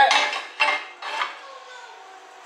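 Square steel 2-inch receiver tube scraping and clanking against a steel hitch plate as it is pushed through the holes cut for it, a few metal knocks and scrapes in the first second and a half.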